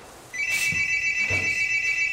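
A telephone ringing: a high electronic ring with a fast, even trill, starting a moment in and still going at the end.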